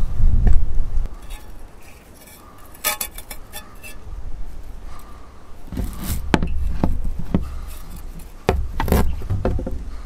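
Sharp, worn edge of a steel bucket trowel cutting fibreglass scrim mesh tape pulled off the roll on a hard work board: scattered clicks, scrapes and light taps, a cluster about three seconds in and more from about six seconds on. Bursts of low rumble come with the handling.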